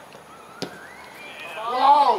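A voice shouting across the football pitch, building up and loudest just before the end, with a single sharp knock about half a second in.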